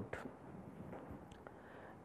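Near silence: faint room tone in a pause between speech, with a few soft clicks.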